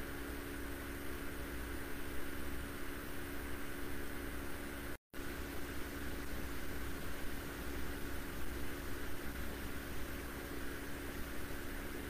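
Steady low hiss with a faint constant hum, the background noise of a webcam-style recording. The sound cuts out completely for a moment about five seconds in.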